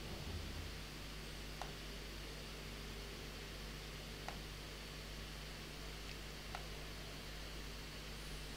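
Quiet room tone: a steady hiss with a low hum, broken by four or five faint, scattered clicks from a laptop being worked.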